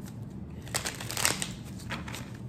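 A deck of tarot cards being shuffled by hand: a run of quick, crisp card rustles and flicks about a second in, and another shorter one near the end.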